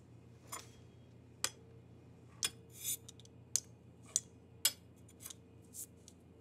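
Knife blade pressing down through croissant dough and tapping the stone countertop with each cut: about nine short, sharp clicks, roughly one every half-second to second.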